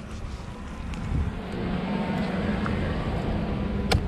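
Motorboat engine running on the water nearby, a steady low hum with hissing wash that grows louder over the few seconds. A single sharp click sounds near the end.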